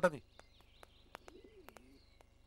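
Faint bird calls in the background, wavering high chirps with a low coo-like call near the end, and a few soft clicks, just after a man's spoken word.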